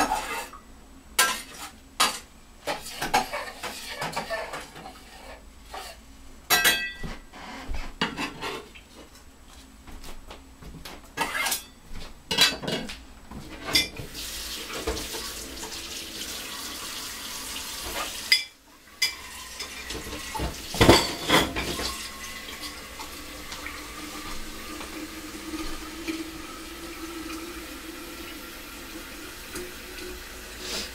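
Kitchen clatter of dishes, pots and cutlery being handled, a run of sharp clinks and knocks through the first half. Then a tap runs steadily for the rest, with a faint tone slowly rising in pitch in the last third.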